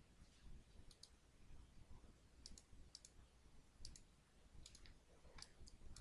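Faint computer mouse button clicks, mostly in quick pairs, several times over near silence.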